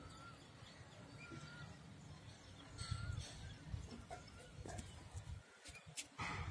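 Quiet outdoor ambience: a small bird gives three short, faint whistled calls about a second apart in the first three seconds, over the low rumble of a handheld phone and a few soft knocks of handling or steps.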